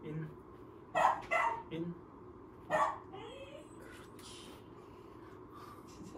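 Small curly-coated puppy barking: several short, sharp barks in a quick run between about one and three seconds in.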